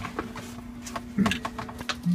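A few light clicks and knocks of the plastic upper spray arm against the dishwasher's stainless steel tub as it is handled for refitting, the loudest about a second in, over a steady low hum.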